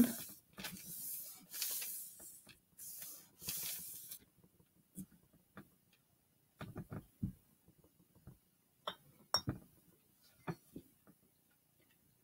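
Quiet handling sounds at a table: soft rustling through the first four seconds, then about a dozen scattered light clicks and taps.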